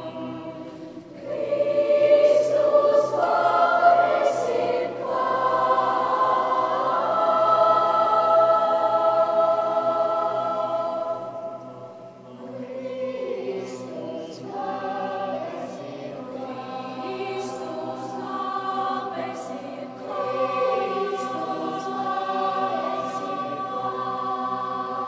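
School choir of children and teenagers singing in long, held phrases. The singing fades to a brief low point about twelve seconds in, then picks up again.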